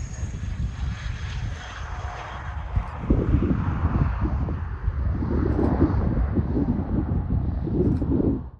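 Distant twin Honeywell TFE731 turbofans of a Bombardier Learjet 45 after landing, a steady jet rumble with a high whine that fades over the first couple of seconds. Wind rumbles on the microphone in gusts, heavier from about three seconds in.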